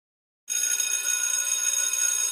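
Intro sound effect for an animated title: a bright, sustained ringing shimmer made of several high steady tones at once. It starts suddenly about half a second in, with a slight rapid wobble in loudness.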